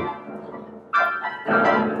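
Upright piano sounding random clusters of notes as its keys are bumped with the backside while dancing. The first cluster strikes at the start and fades, then loud new clusters come about a second in and again half a second later, each ringing away.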